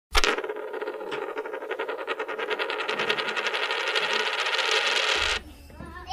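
A dense run of rapid metallic tinkling clicks, coin-like, opening with a sharp hit and cutting off suddenly about five seconds in.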